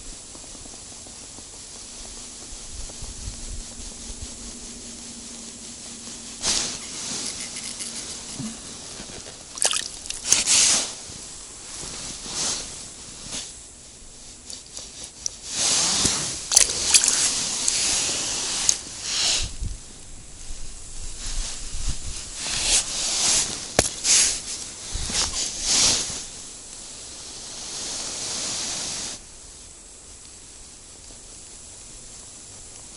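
Irregular bursts of rustling and scraping from clothing and hands handling a small ice-fishing rod and a freshly caught roach, with a few sharp clicks. The bursts are thickest in the middle, with a longer steady rustle near the end.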